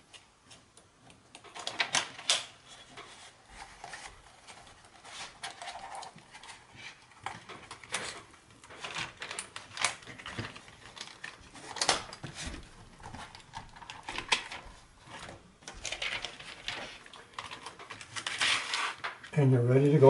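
Handling noises from a plastic cutting mat with its clear cover and a steel ruler being slid and positioned on a work surface: scattered light clicks, scrapes and plastic rustles at irregular intervals.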